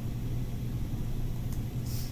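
Steady low mechanical hum of classroom equipment, with a brief soft hiss near the end.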